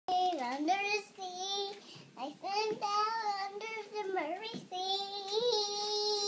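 A young girl singing in a high voice, in short phrases with sustained notes, holding one long note through the last second or so.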